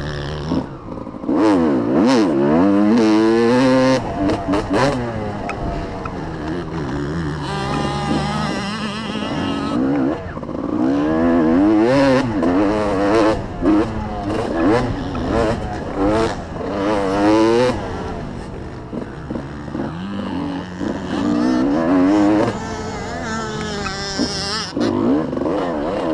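Motocross dirt bike engine revving up and dropping back over and over as the rider accelerates, shifts and rolls off through the track's turns and straights, heard through a helmet-mounted camera with wind buffeting.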